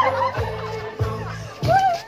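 Gorshey circle dancers' voices singing and calling out, a held wavering note fading early and a rising-and-falling call near the end, over music, with thuds of stamping feet about every half second.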